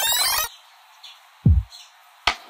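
A rising electronic glide, several tones sweeping upward together, cuts off about half a second in, leaving a faint hiss. About a second and a half in, a deep bass drum hit falling in pitch lands as an electronic hip-hop beat starts.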